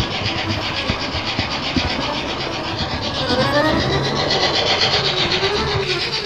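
H0-scale model train running along the layout track, heard close up from on board: a steady rubbing rattle of wheels and mechanism, with a higher rising tone coming in about halfway through.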